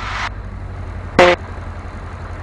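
Luscombe 8A's small four-cylinder engine idling with a steady low drone, heard from inside the cockpit during the landing rollout on grass.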